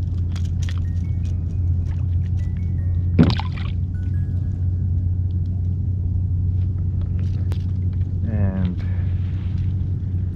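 A steady low rumble runs throughout, with faint background music. A short rising whoosh comes about three seconds in, and a rising, wavering pitched sound comes near the end.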